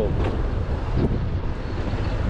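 Steady low wind rumble buffeting the microphone on a moving scooter.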